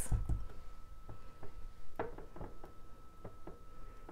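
Silicone spatula stirring a thick, pudding-like cream in a small glass jar, scraping and tapping against the glass in a series of light, irregular knocks. The loudest knock comes about two seconds in.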